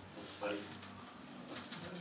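Speech only: a man's voice faintly says 'buddy' in a quiet room.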